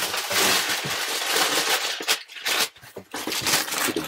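Brown kraft packing paper crumpled by hand as void fill for a cardboard shipping box: a dense crinkling rush for about two seconds, a brief pause, then more scrunching.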